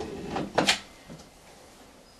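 Short handling noise from the caulking work: two quick scraping clicks about half a second in, then faint room tone.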